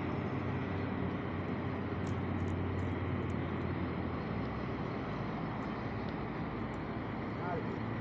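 Diesel engine of a heavily overloaded Mahindra 12-wheel tipper truck pulling uphill, a steady low drone heard from a distance; its note drops and changes about four seconds in.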